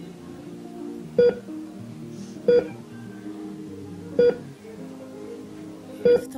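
Patient-monitor beeps, three short, loud single beeps about one and a half seconds apart, over soft sustained background music.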